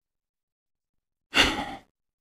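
A single short breathy sigh or exhale from a person, about a second and a half in.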